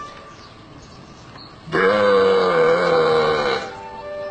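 A cow mooing once, a single long low moo of about two seconds starting near the middle, loud over quiet background music.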